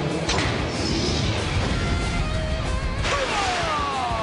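Action-show soundtrack of background music with loud crashing, mechanical sound effects, which go with the zords disengaging. There is a sharp impact about a third of a second in, and falling whistling tones near the end.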